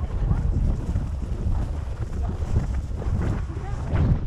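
Wind buffeting a helmet-mounted camera's microphone, a steady low rumble that rises and falls, while the rider walks the horse across an open field.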